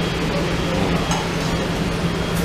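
Steady background din of a busy buffet restaurant, an even noisy hiss over a constant low hum.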